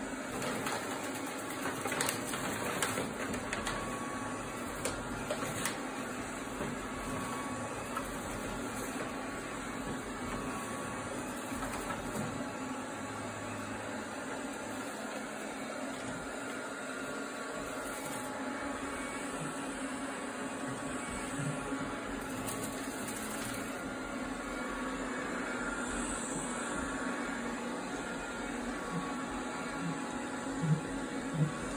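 Eufy robot vacuum running on a hardwood floor, its motor and brushes giving a steady hum, with a few light knocks in the first several seconds.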